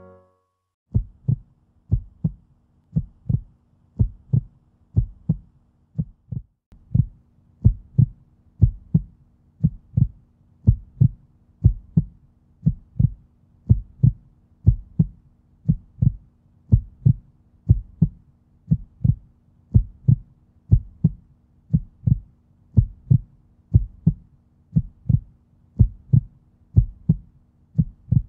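A steady pulse of low thumps, about two a second in pairs like a heartbeat, over a faint steady hum. It starts about a second in and drops out briefly near six seconds.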